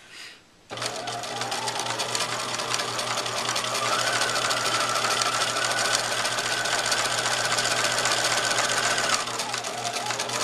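Electric sewing machine starting up about a second in and running steadily, its needle stitching a straight seam line through pocket fabric without backstitching. The motor's pitch rises a little about four seconds in as it speeds up.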